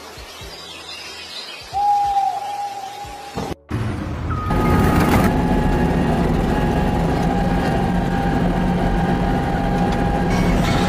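Heavy machinery running: a steady low rumble with a held whine on top, starting after a short break about four seconds in. Before it, a quieter stretch with one drawn-out squeal.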